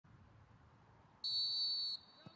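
Referee's whistle: one steady, high-pitched blast starting a little past halfway and lasting under a second, blown after checking his watch to start play.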